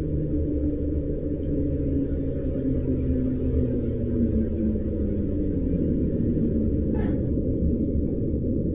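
Low, muffled rumbling drone with a few faint low tones slowly sliding down in pitch.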